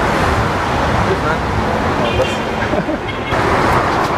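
Busy street ambience: steady traffic noise, with passers-by talking indistinctly in the background.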